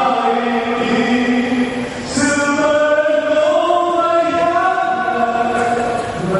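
Voices singing a slow, chant-like hymn in long held notes, with a short break between phrases about two seconds in.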